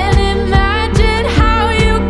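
Pop song: a woman singing a chorus over a steady drum beat.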